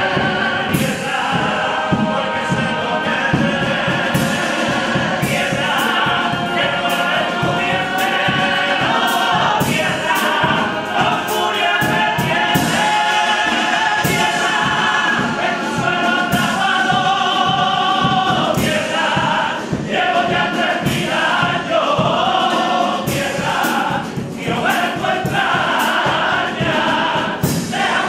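A Cádiz carnival comparsa, a male chorus, singing a copla together to strummed Spanish guitars.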